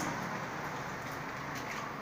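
Faint key clicks from a Dell computer keyboard being typed on, over a steady background hiss.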